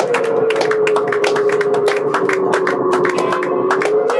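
Live experimental electric guitar and synthesizer music: one sustained tone slides slowly lower in pitch over a stream of rapid, irregular clicks and taps.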